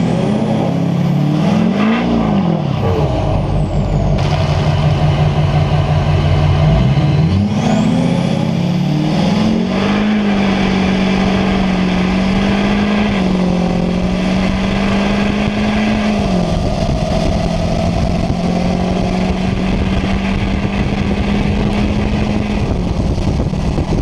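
2005 Duramax pickup's 6.6-litre turbo-diesel V8 at full throttle in a drag-strip pass. Its pitch climbs and drops in steps as the transmission shifts, and a thin high whistle rises twice in the first ten seconds. It then holds steady for several seconds and eases off about two seconds before the end.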